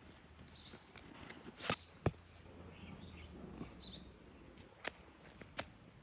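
A few sharp clicks and taps from a handheld phone being carried and moved about while walking, over a faint outdoor background.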